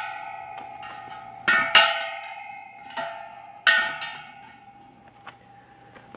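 Steel wire-spoke Ford Model A wheels knocked about as they are turned by hand: about five metallic clanks over the first four seconds, each leaving a bell-like ringing tone that dies away slowly.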